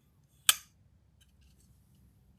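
One sharp metallic click from a High Grain Designs Deville prototype flipper folding knife as its blade snaps into place, about half a second in.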